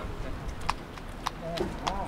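Footsteps on concrete: three or four sharp, clicking steps about half a second apart, with a faint voice in the background.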